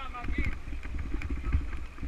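Wind rumble on the microphone of a bicycle-mounted camera riding a dirt track, with scattered clicks and rattles from the bike and the gravel under the tyres. Voices of other riders are heard briefly near the start.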